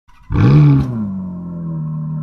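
Engine sound effect in a channel intro: a sudden loud rev that drops back and settles into a steady running note.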